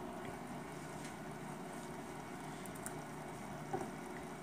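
Quiet room hiss with a tiny tick about three seconds in. Near the end comes a soft knock as a stemmed beer glass is set down on a tabletop.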